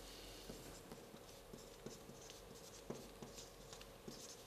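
Felt-tip marker writing on a paper card on a flip-chart board: faint, short scratching strokes one after another.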